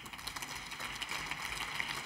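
Light applause from a seated group of deputies in a parliamentary chamber: a steady patter of hand claps.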